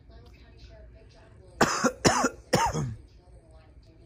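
A person coughing three times in quick succession, loud and close, over faint TV speech.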